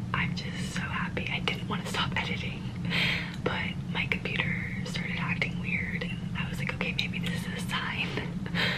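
A woman whispering close to the microphone over a steady low hum.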